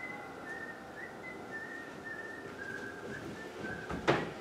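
A person whistling a slow tune, faintly: a run of short, held high notes that step gradually lower.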